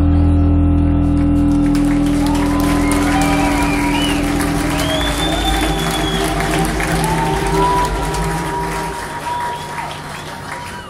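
A live band's last chord held and ringing out, then fading. An audience applauds and cheers over it, with high wavering whistles through the middle.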